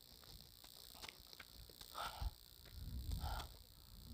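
Faint, steady high-pitched insect chirring, with a few low rumbles on the microphone about halfway through.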